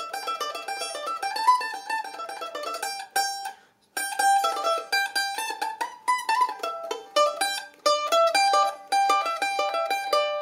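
Mandolin picked one note at a time, running through a scale pattern across its paired strings. The notes come in quick succession, with a brief pause a little after three seconds in.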